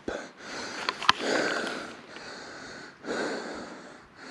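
A man breathing hard close to the microphone, two long heavy breaths a second or so apart, winded from walking up a steep ridge. A single sharp click comes about a second in.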